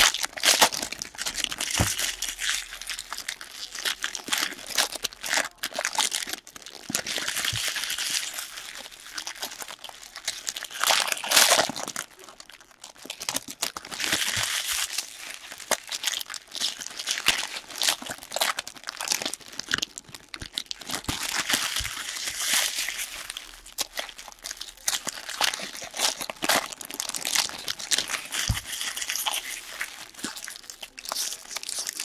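Foil wrappers of trading-card packs being torn open and crumpled by hand, a continuous irregular crinkling and ripping with a brief lull about twelve seconds in.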